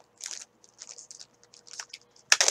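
Faint crinkling of a plastic zip-top bag being handled, a few light, scattered crackles.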